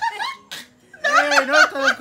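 People laughing, the laughter breaking out about a second in after a brief lull.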